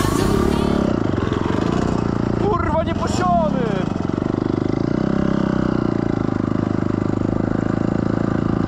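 Dirt bike engine running steadily under throttle, close to the camera. A brief voice cuts in about two and a half seconds in.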